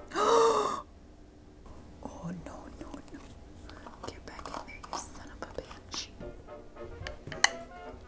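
A woman's short, loud gasp, then soft background music with a few faint clicks and taps from plastic measuring spoons and a spice tin being handled.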